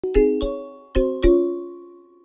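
A short logo jingle of five notes struck with mallets on a bright, xylophone-like mallet instrument: three quick notes, then two more about a second in. Each note rings on and fades away.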